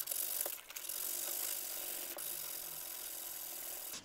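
220-grit sandpaper rubbed by hand over black ABS plastic, a steady scratchy hiss, sanding away a dried drip mark on a Mercedes W126 instrument cluster housing.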